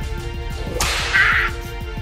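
A single sharp whip crack with a hissing tail, about a second in, over background music with a steady beat.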